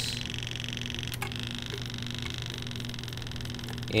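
Steady machine hum with a fainter higher whine above it, and one light click about a second in.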